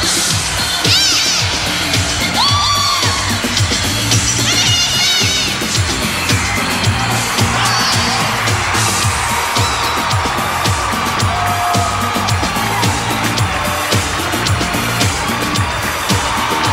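Live pop concert music, instrumental backing with a steady beat, before the vocals start. Over it a crowd cheers, with high shrill screams and whoops standing out during the first five seconds or so.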